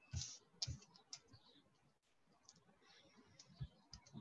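Near silence with a few faint, short clicks, mostly in the first second and one more near the end.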